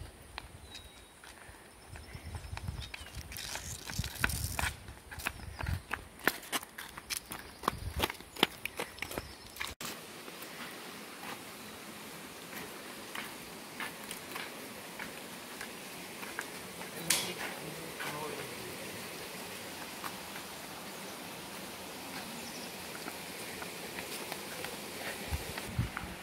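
Footsteps of several people walking on a paved road and a concrete bridge, with irregular low rumbles through the first ten seconds. About ten seconds in the sound changes abruptly to a steadier, quieter outdoor background with scattered steps.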